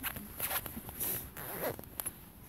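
Clothing rustling close to the phone's microphone in about four short rasping strokes.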